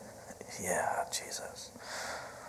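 A man whispering a few soft words of prayer, with hissing breathy consonants, too quiet to make out.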